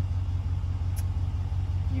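Ram 2500 pickup's engine idling, a steady low rumble heard inside the cab, with a faint tick about a second in.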